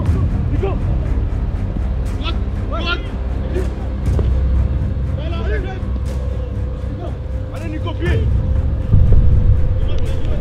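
Footballers' shouts and calls across the pitch during open play, over a loud low rumble that grows louder near the end.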